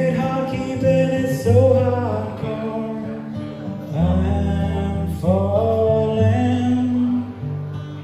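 A man singing while strumming an acoustic guitar, the chords changing every second or so under long sung phrases.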